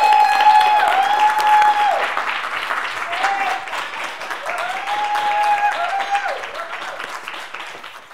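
Audience applauding at the end of a talk, with several long, high cheers held over the clapping. The applause fades out toward the end.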